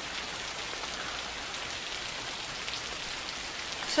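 Heavy rain falling steadily, an even, constant hiss.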